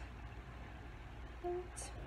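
Water pouring from a plastic gallon jug into a glass jar, a faint steady trickle, with a short pitched sound about one and a half seconds in.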